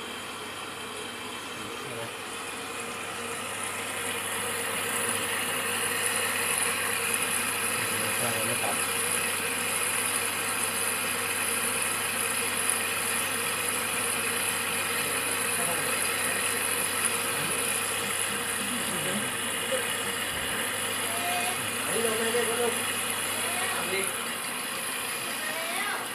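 Water pouring through the detergent drawer of an Electrolux EWF10741 front-load washing machine as its inlet valve fills the machine: a steady rushing hiss that grows louder about four seconds in.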